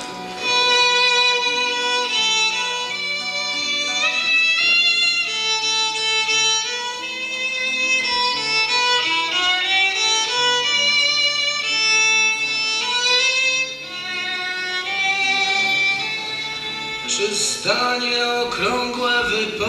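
Live violin playing a melody of held notes over acoustic guitar accompaniment, starting about half a second in.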